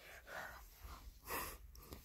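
Faint breathing close to the microphone: a few soft puffs.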